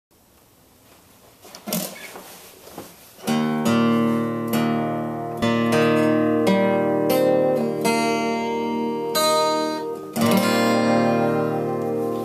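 Steel-string acoustic guitar with a capo, first a few faint knocks of handling, then open chords strummed slowly from about three seconds in, one strum roughly every second, each left to ring. A tuning peg is turned between strums, checking the tuning.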